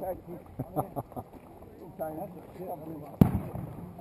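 Faint voices and a few light clicks, then one sharp, loud bang about three seconds in that rings out briefly.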